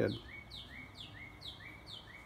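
A songbird singing a fast run of repeated two-note phrases, each a high note slurring down followed by a short lower note rising, about two and a half phrases a second.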